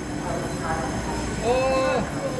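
A Taiwan Railway EMU3000 electric train standing at the platform, its onboard equipment giving a steady hum. A voice calls out briefly near the end.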